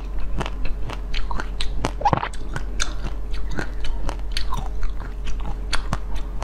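Close-miked chewing and crunching of frozen basil-seed ice: a dense run of small crisp cracks and crackles, with a louder crack about two seconds in.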